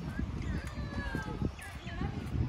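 Birds calling in drawn-out, falling notes, over a low rumble and the footsteps of someone walking on a path.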